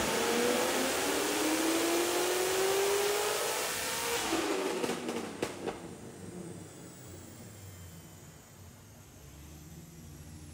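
Supercharged LS9 V8 of a C6 Corvette ZR1 at full throttle in a dyno pull, its pitch rising steadily for about four seconds. Near five seconds in the throttle closes with a couple of sharp cracks. The engine and dyno rollers then wind down, fading much quieter.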